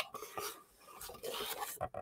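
A boxed vinyl figure being handled: a sharp click at the start, then faint rustling and light taps of the cardboard box as it is turned in the hands.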